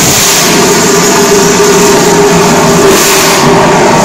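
Fire extinguisher discharging through its horn nozzle onto a small fire: a loud, steady hiss.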